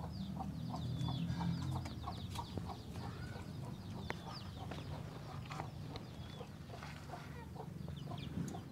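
Domestic chickens clucking, with many short high chirps and peeps scattered throughout.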